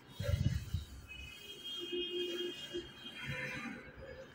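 Canon PIXMA G640 flatbed scanner running a scan, its carriage motor giving a whine that comes and goes, with a low thump about half a second in.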